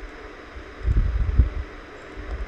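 A brief low rumble on the microphone about a second in, with a couple of dull bumps, over a steady faint hiss.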